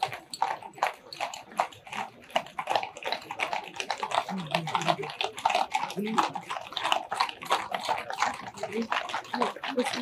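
Hooves of a mounted cavalry detachment clopping on a paved road: a dense, irregular clatter of many hoofbeats from a column of horses passing close by.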